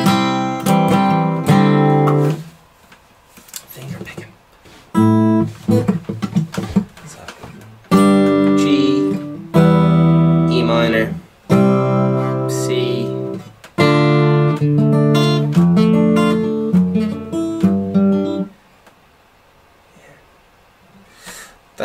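Acoustic guitar played in several short phrases of plucked and strummed chords, separated by pauses of a second or two, with the playing stopping near the end.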